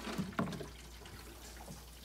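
Water trickling and splashing from the outlet hose of a battery-powered turbo transfer pump as it drains an aquarium into a bucket, fairly faint, with a couple of light clicks about half a second in.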